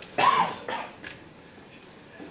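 A man coughing close to a podium microphone: one loud, short cough followed by a smaller one about half a second later.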